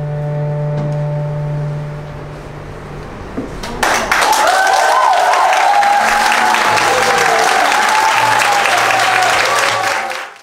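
Recorded tango music ends on a held final chord. About four seconds in, the audience starts clapping loudly, with voices calling out over the applause.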